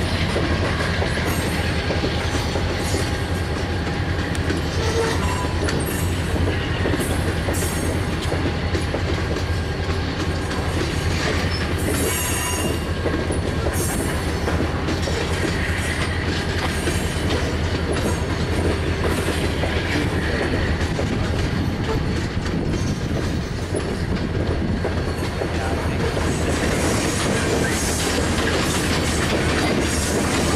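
Tank cars of a freight oil train rolling past close by: a steady rumble of steel wheels on rail, with scattered clicks and now and then a faint high wheel squeal.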